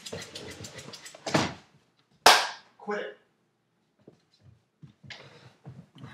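Dogs making noise in the room, with one sudden, very loud sharp smack about two seconds in, the loudest sound, followed by a short bark-like call.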